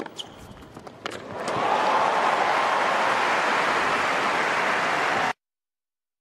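A few sharp tennis ball strikes in a rally, then an arena crowd breaks into loud applause and cheering that holds steady. About five seconds in, the sound cuts off abruptly to dead silence as the broadcast feed drops out.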